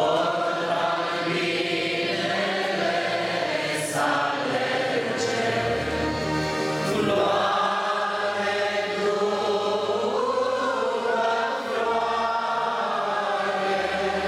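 A congregation of men and women singing a hymn together, in long held, slowly moving notes. A low bass note sounds underneath now and then.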